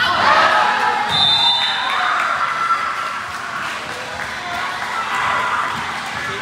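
Volleyball rally in a gym: the serve is hit right at the start, with ball thumps through the play. Players and spectators shout and cheer throughout.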